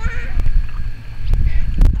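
A faint animal call over a low rumble.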